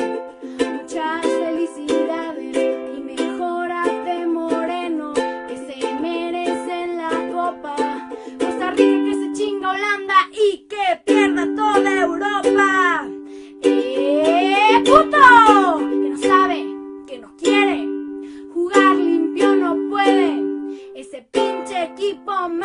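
Ukulele strummed in chords, with a singing voice over it that grows louder and slides up and down in pitch about two-thirds of the way through.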